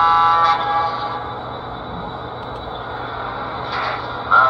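Electronic horn of a JLC model GG1 electric locomotive sounding through its onboard speaker and cutting off about half a second in. After it comes the steady running hum and rolling of the double-headed model locomotives on three-rail track.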